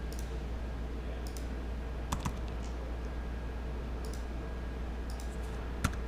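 Scattered computer mouse clicks and keystrokes, a few seconds apart, with the sharpest click just before the end, over a steady low hum.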